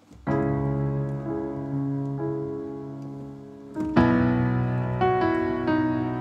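Piano chords played on a keyboard through a software piano, part of a minor chord progression. A chord is struck and held, its inner notes shifting twice as it fades. A louder new chord comes in about four seconds in, moving on to a B add11 chord near the end.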